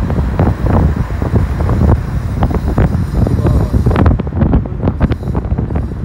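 Wind buffeting the microphone of a phone filming from a moving car, a loud, irregular low rumble, with road traffic noise underneath.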